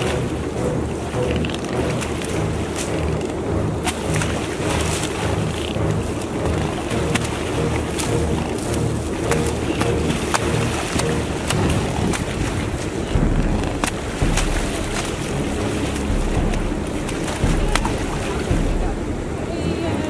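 Mute swans fighting in shallow water: splashing, wings beating, and churned water, with many sharp splashes and slaps throughout. Wind rumbles on the microphone, heavier from about two-thirds of the way in.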